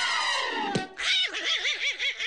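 Cartoon soundtrack music and effects: a held chord slides down in pitch and ends in a sharp click a little under a second in. A high, fast-wavering warbling tone follows.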